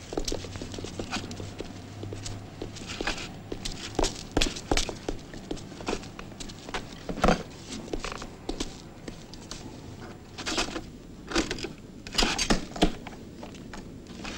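Irregular footsteps with scattered knocks and clicks as objects are handled and moved about. The sharper knocks come in the second half.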